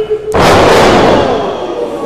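A wrestler slammed down onto a wrestling ring: one loud crash about a third of a second in, ringing on and fading over about a second.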